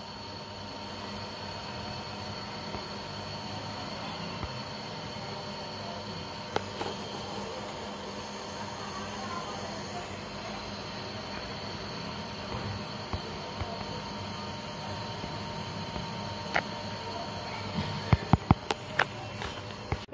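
Steady hiss and rumble of a lidded pan of mutton curry simmering on a gas burner. Near the end come a few sharp clinks as the glass lid is handled.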